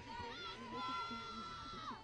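Distant voices at a softball field: one person holds a long, high-pitched call that drops off near the end, over faint background chatter.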